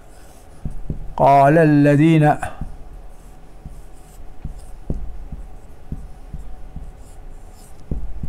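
Marker pen writing on a whiteboard: faint scratchy strokes and light ticks as the letters are drawn. A man's voice sounds once, for about a second, a little after the start.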